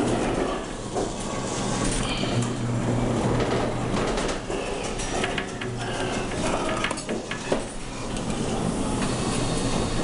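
Claw machine running as the claw is moved over the prizes: a steady mechanical hum with light rattles and clicks, a few sharper clicks about seven seconds in.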